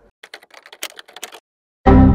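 Computer keyboard typing sound effect: a quick run of key clicks for about a second and a half, then a brief pause and a loud, deep hit just before the end.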